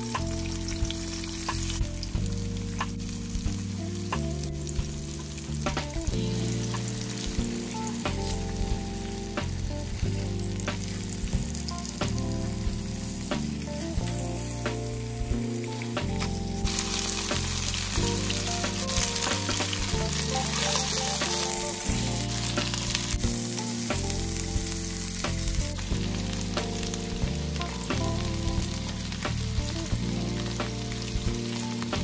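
Chicken breast pieces frying in oil in a ceramic nonstick pan: a steady sizzle with frequent sharp crackles, turned over with metal tongs. The sizzle grows louder a little past halfway.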